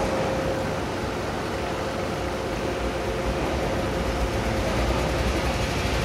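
Kubota B6001 mini tractor's small diesel engine running steadily.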